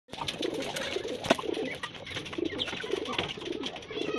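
Racing pigeons cooing over and over, with scattered sharp clicks, the loudest about a second and a half in.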